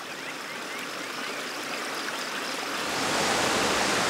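A river rushing over rocks: a steady wash of water noise that grows louder about three seconds in.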